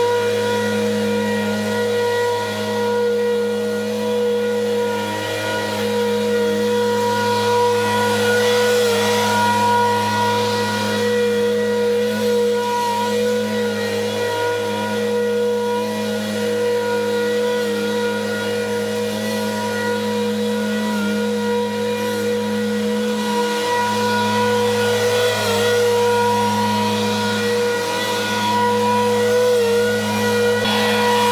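Zero-turn riding mower running steadily with its blades engaged, mulching leaves into the lawn; its hiss swells and fades as it moves nearer and farther, over a steady hum.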